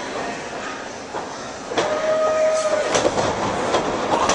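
Ringside sound of a pro wrestling match: a sharp thud about two seconds in, a voice holding one long call for about a second, then a quick run of thumps and slaps from the ring.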